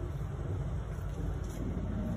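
A low, steady vehicle rumble.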